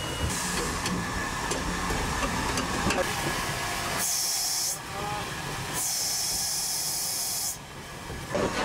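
Cape Government Railways 6th Class steam locomotive heard from the footplate: loud bursts of steam hissing, one short and one about two seconds long, over the engine's steady working noise.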